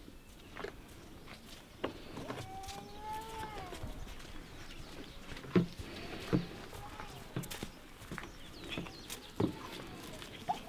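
Outdoor farmyard ambience: one drawn-out farm-animal call that rises and falls, lasting about a second and a half, a little over two seconds in, with fainter calls and scattered short knocks.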